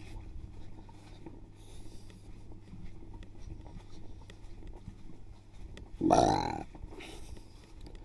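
Plastic bucket carried by its handle, giving a low handling rumble and faint rustles inside the bucket. A brief vocal sound, about half a second long, comes about six seconds in.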